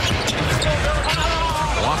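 Basketball dribbled on a hardwood court, repeated bounces over the steady noise of an arena crowd, with some short high squeaks in the second half.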